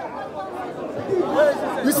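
Speech only: faint background voices of a small crowd, then a man starts talking near the end.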